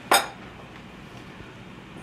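A single short clink of kitchenware on a hard surface about a tenth of a second in, then only quiet kitchen room tone.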